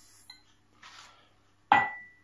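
Sugar poured into a stainless steel stand-mixer bowl, a faint soft hiss, then near the end one sharp metallic clink against the bowl that rings briefly.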